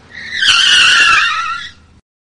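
Car tyres screeching as a car brakes to a stop: one loud, wavering high-pitched squeal that builds quickly, holds for about a second and fades out before the end.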